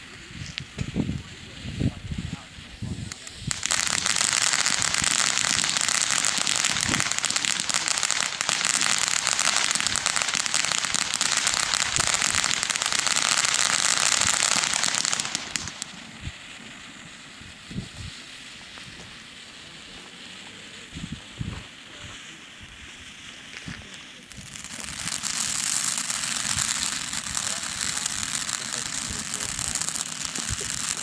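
Black Cat Tropical Thunder ground fountain firework spraying sparks with a loud hissing crackle. It surges about four seconds in, drops to a quieter phase with scattered pops around the middle, and surges again for the last several seconds.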